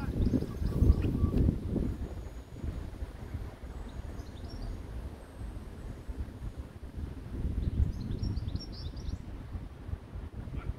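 Wind buffeting the microphone in an uneven low rumble, with birds chirping faintly a few times.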